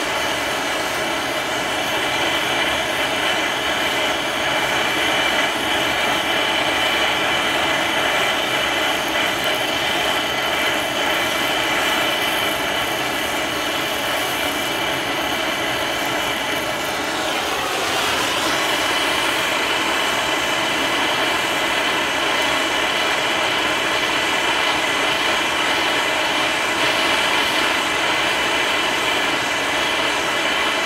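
Handheld MAP gas torch burning with a steady hiss as its flame heats the ejector area of a sheet-steel AK receiver toward red heat for a spot heat treat. The hiss wavers briefly a little past halfway.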